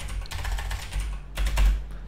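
Typing on a computer keyboard: a quick run of keystrokes, busier and louder in the second half.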